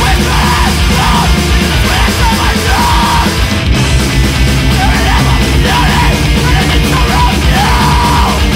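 Screamo/post-hardcore band music, loud and dense throughout, with a screamed lead vocal in repeated phrases.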